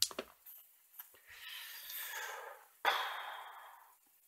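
Two six-sided dice thrown into a dice tray: a sharp clatter about three seconds in that dies away as they roll and settle, after a softer rustling sound.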